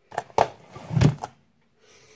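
A tub of spread and a table knife being handled on a kitchen worktop: a few sharp knocks and clatters, the loudest about a second in.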